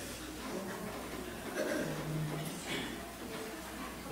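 Quiet chatter of several people's voices, with a low steady hum underneath.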